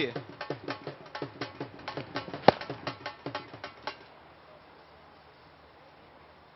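A broadcast sting of fast, rhythmic drumbeats plays over the replay transition after a boundary, with one sharp, loud hit about halfway through. It stops abruptly about four seconds in, leaving only faint ground ambience.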